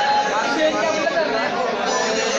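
Crowd of students chattering, many voices talking at once in a large hall.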